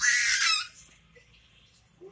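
A baby's loud, high-pitched squeal lasting about half a second.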